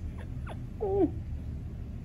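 A woman's brief wordless vocal sound, falling in pitch, about a second in, over a low steady rumble with a few faint clicks.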